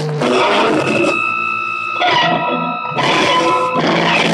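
Loud distorted noise music from live improvisation, amplified through effects. About a second in the dense noise thins to a steady held tone with overtones for about two seconds. A little before three seconds in the full dense noise comes back.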